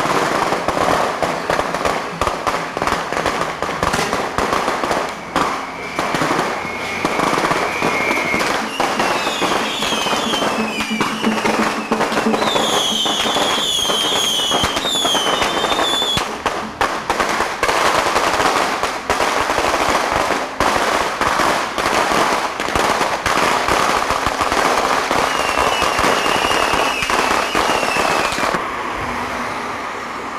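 Strings of firecrackers going off in a continuous rapid crackle, with high whistling tones now and then; the crackle stops shortly before the end.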